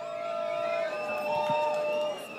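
Concert audience cheering, with held whoops and whistles.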